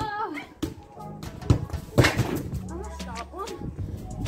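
A football struck in a penalty shot, with a sharp thud about two seconds in, amid children's voices.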